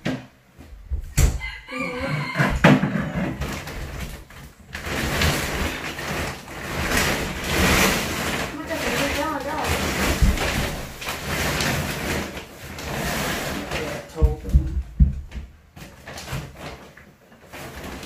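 Large woven plastic storage bags rustling and scraping as they are pushed up onto the top of a wooden wardrobe, with several knocks and thuds against the wood. The rustling is loudest and runs for several seconds in the middle, and short calls sound near the start and again near the end.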